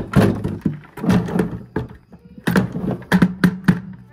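Irregular knocks and thunks in a horse barn, several close together near the middle and near the end, over a low steady hum.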